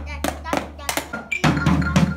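Children striking drum practice pads and a drum with sticks in a loose, uneven rhythm, several hits a second. A steady low hum underneath drops out at the start and comes back about a second and a half in.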